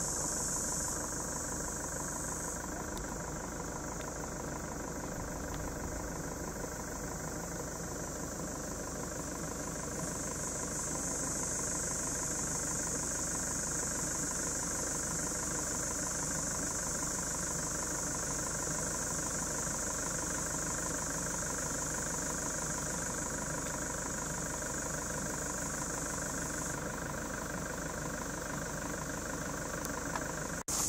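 Cicadas buzzing in a steady high-pitched chorus that dips briefly a second or two in and again near the end, over the steady hum of an engine running.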